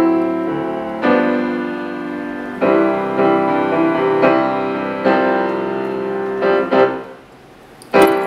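Grand piano played solo: sustained chords struck every second or two and left to ring. The last ones, near the end, die away to quiet as the piano closes out a song.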